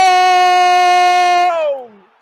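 A radio football commentator's drawn-out goal cry, one long "gol" held loudly on a single steady pitch, which drops in pitch and dies away about a second and a half in.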